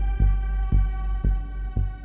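Ambient meditation music: a held chord that rings on steadily, over a soft low pulse beating about twice a second, like a slow heartbeat.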